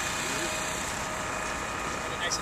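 An engine running steadily at idle, a constant drone with a faint steady whine over it.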